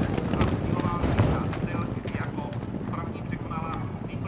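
Hoofbeats of a field of steeplechase racehorses galloping on turf.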